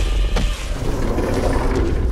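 Cartoon sound effects: a loud, deep rumble with a noisy roar over it, and a sharp hit about half a second in.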